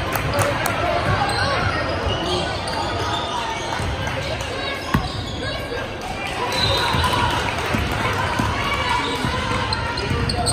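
Voices of spectators and players during a basketball game, with a basketball bouncing on the hardwood floor and one sharp knock about five seconds in.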